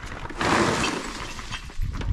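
Rubble and stones tumbling out of a tipped metal wheelbarrow. A sudden clattering rush starts about half a second in and dies away over the next second, followed by a low thump near the end.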